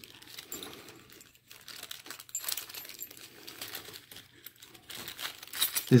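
Brown wrapping paper and small plastic bags crinkling and rustling in short, irregular bursts as items are unwrapped by hand, with light clicks among them.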